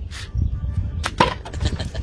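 A thrown object knocking against a wooden stool and a swollen plastic bottle: a few sharp knocks, the loudest pair about a second in, over a low rumble.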